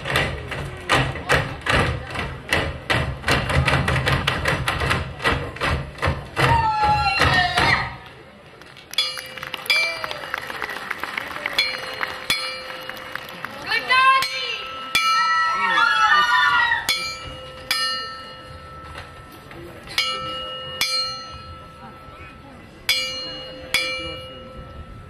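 Folk music from a cimbalom band: for about eight seconds a fast passage with a quick, steady beat and bass. Then a slower passage of single ringing cimbalom strikes with voices singing over them.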